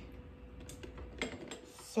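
A few light clinks of kitchenware being handled, one under a second in and another just past halfway, over a steady faint hum.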